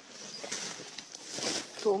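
Soft rustling noise that builds and fades over about a second and a half, like cloth rubbing against a body-worn microphone. A woman's voice speaks one word near the end.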